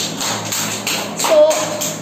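A small group clapping their hands to applaud, a dense run of claps, with a single short word spoken about a second in.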